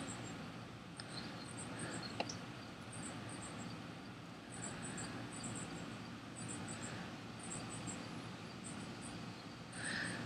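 Faint high-pitched insect chirping, short pulses in groups of two or three repeating every second or so, over a low hiss. Two light clicks come about one and two seconds in.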